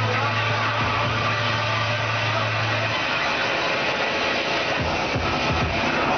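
Loud dance-workout music over a sound system, with a steady low bass drone through the first half.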